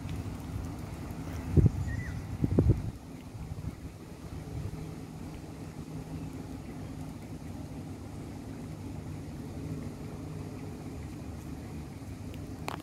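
A steady low mechanical hum, with two short knocks about a second apart near the start.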